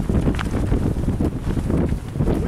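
Wind buffeting the camera microphone in the storm's gusts: a loud, uneven rush of noise that is mostly deep.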